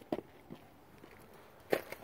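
A few footsteps crunching on snow-covered ground, heard as short separate crunches with quiet between them. The loudest comes near the end.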